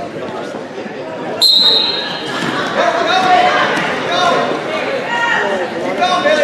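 A referee's whistle gives one short, steady blast about a second and a half in, the signal that starts the wrestling bout. It is followed by spectators and coaches shouting.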